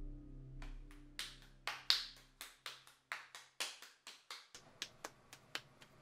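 A ball of wet clay being patted between a potter's palms: quick sharp slaps at about four a second, loudest about two seconds in and then growing softer. Soft music fades out during the first couple of seconds.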